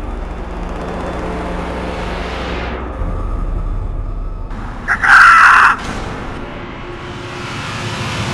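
Soundtrack sound effects: a steady low rumble with a falling whoosh about two to three seconds in, then a loud high screech lasting under a second about five seconds in.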